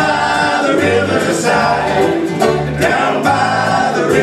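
Acoustic string band playing live, with several voices singing together in harmony over guitar, banjo, mandolin and upright bass.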